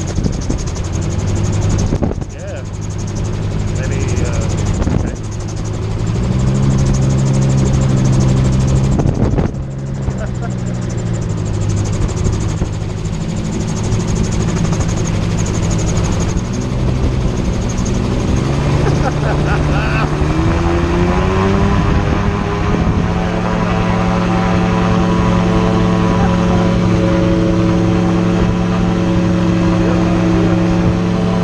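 Magni M16 gyroplane's pusher engine and propeller running at low power over wind rushing past the open cockpit, through a steep approach and a landing roll on grass. The engine note shifts a few times, rises a little past twenty seconds in, and then holds steady.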